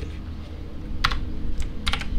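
A few computer keyboard keystrokes, a quick pair about a second in and another near the end, as a copied dependency line is pasted into a file.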